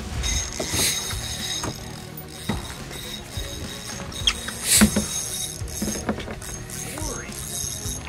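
Spinning fishing reel being cranked as a fish is fought from a boat, with light mechanical clicking and two short bursts of water or wind noise, about a second in and near the middle.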